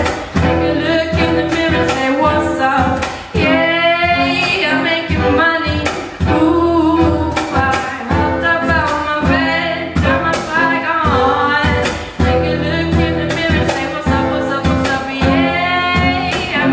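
Live acoustic band: a singer's voice over strummed acoustic guitar and fiddle, with regular percussion strikes keeping a steady beat.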